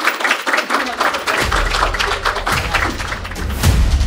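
Audience applauding, dense clapping with no words. About a second in, music with a deep bass comes in under the claps and builds.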